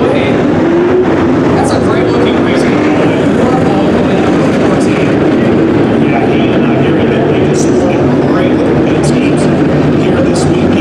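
A pack of dirt modified race cars with V8 engines running at speed, a loud, steady, unbroken engine drone that echoes in an enclosed arena.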